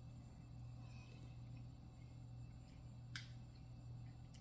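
Near silence: a faint steady low room hum, with one soft click about three seconds in.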